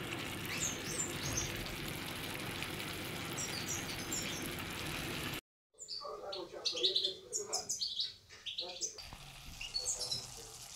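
Small birds chirping in short repeated calls over a steady hiss from the simmering pan. About halfway through the sound cuts out for a moment, then returns with denser, louder chirping.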